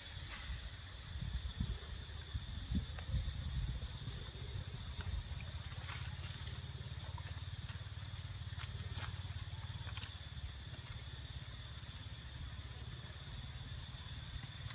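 Outdoor background: a steady low rumble with a thin, steady high-pitched hum above it, and a few light clicks and rustles scattered through, most around the middle.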